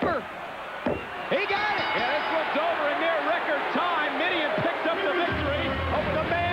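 Sharp slaps on a wrestling ring mat in the first second or so, typical of a referee's pin count, over arena crowd noise. Music with steady low tones comes in near the end.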